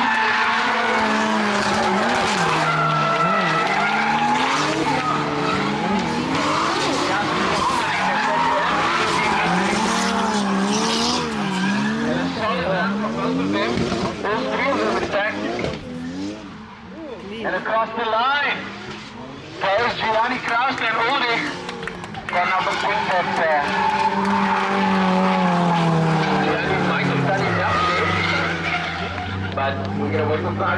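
A drift car's engine revving up and down over and over as it slides sideways through the corners, its tyres skidding. The engine drops away briefly near the middle, then settles to a steadier, lower note near the end.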